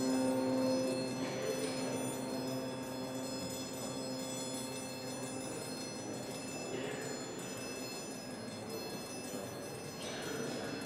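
A string quartet plays a quiet, sustained passage of ringing, chime-like held tones. The low held note fades over the first half, and a few soft higher swells come through.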